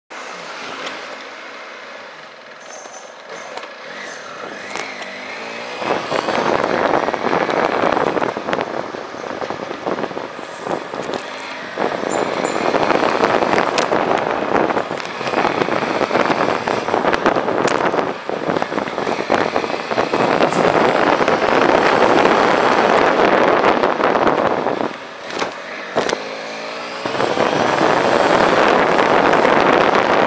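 Motorcycle riding through city traffic, heard as loud rushing wind on a tank-mounted camera's microphone over the engine. It is quieter for the first few seconds, rises sharply about six seconds in, and dips briefly near twelve seconds and again around twenty-five seconds as the bike slows.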